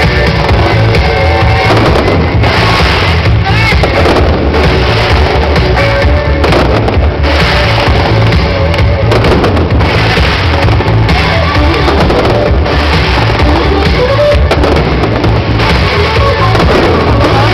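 Loud music over a show's sound system, with fireworks banging and crackling through it several times.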